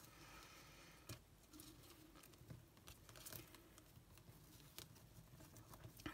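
Near silence, with faint rustles and a few light ticks of a stiff ridged ribbon and the paper card being handled as a bow is adjusted.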